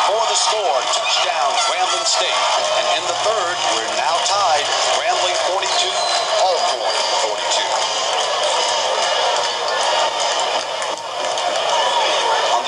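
Large stadium crowd cheering and shouting, many voices at once, heard through an old television broadcast recording.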